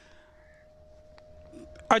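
A faint, short crow caw at the start of a pause in speech, over a thin steady hum.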